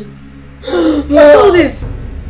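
A man's pained cries: two short anguished vocal outbursts, each falling in pitch, starting about two-thirds of a second in, the loudest near the middle.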